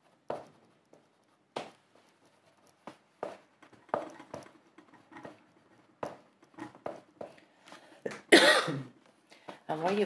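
Oil pastel rubbed over paper in short, uneven strokes, a dry scuff every second or so. A cough comes about eight seconds in and is the loudest sound.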